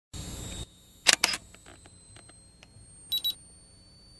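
Intro sound effects: a brief hiss, then two sharp shutter-like clicks and a few faint ticks, then a quick high double beep about three seconds in.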